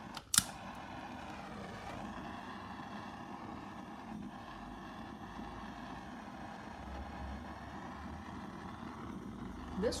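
Handheld gas torch on its highest setting: a sharp click as it is lit, then the flame hissing steadily.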